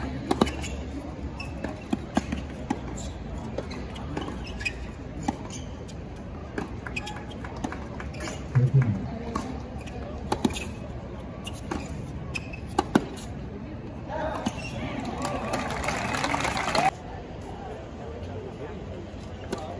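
Tennis rally: sharp, irregular racquet strikes on the ball and ball bounces, over a steady murmur from the crowd. Near the end the spectators clap for about three seconds, and the sound cuts off suddenly.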